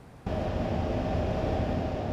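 Steady background hum and low rumble of location ambience that cuts in abruptly about a quarter second in and holds steady.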